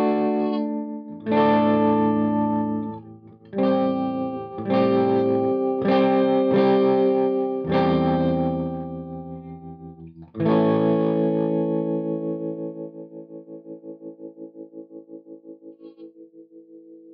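Electric guitar (PRS SE Custom 24) through a distorted Mesa/Boogie Mark V amp and a Spaceman Voyager I optical tremolo pedal, playing a riff of struck chords. The last chord, struck about ten seconds in, is left to ring and fade while the tremolo pulses its volume about four times a second.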